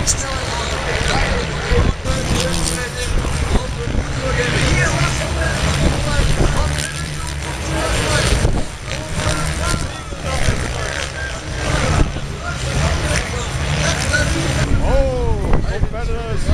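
Storm wind buffeting the microphone, with dirt bike engines running in the distance and indistinct voices mixed in.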